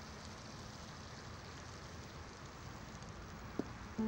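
Faint, steady background hiss of outdoor ambience, with one light click near the end.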